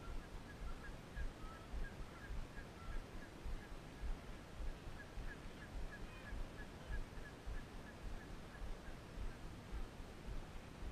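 A bird calling a series of short, evenly spaced high notes, about three a second, in two runs with a pause of a second or so between them. Low wind buffeting on the microphone runs under it.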